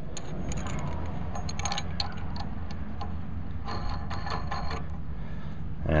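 Light metallic clinks and ticks of a steel nut and washer being handled and threaded by hand onto a hitch bolt, in a few short clusters, over a steady low rumble.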